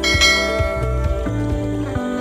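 A bell-like notification chime sound effect rings once at the start and fades away, over soft background music with low sustained tones.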